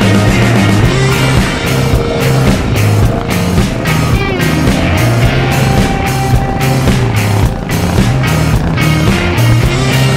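Background rock music: electric guitar over a steady driving drum beat and bass line.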